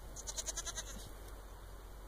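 A goat bleating once, a short wavering bleat lasting under a second near the start.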